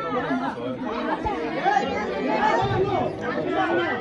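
Several people talking over one another: steady, overlapping chatter of a small group.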